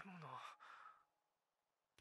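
A brief faint sigh, its pitch falling, in the first half second, then near silence.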